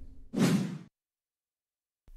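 A short whoosh, a news-graphic transition sound effect lasting about half a second, then dead silence.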